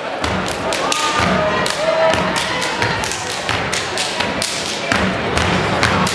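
A step team stepping: rapid, syncopated foot stomps on a wooden stage mixed with hand claps and body slaps, ringing in a large hall.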